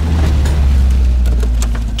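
An SUV drives up close and pulls in, its engine giving a low, steady rumble.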